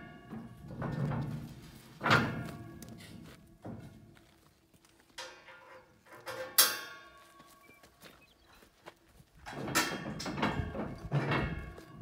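Aluminium trailer loading ramps being handled and lowered into place, giving metal clanks and thunks that ring briefly. There is a sharp clank about two seconds in, the loudest ringing clank a little past the middle, and a run of clattering near the end.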